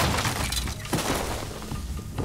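Fight-scene sound effects: a loud crash as a body slams to the ground among breaking debris, then a second sharp impact about a second in.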